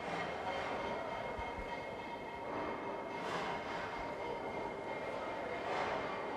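Steady din of running machinery in a sugar refinery, with faint steady whine tones running through it.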